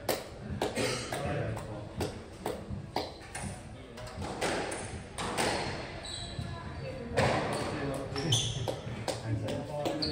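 Indistinct voices echoing in a squash court, with many scattered sharp knocks and taps and a few brief high squeaks.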